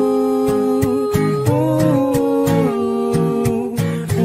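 Music: the opening of a new song just after a gap between tracks. Held, pitched notes shift in pitch about a second and a half in, over a steady beat of about two strokes a second.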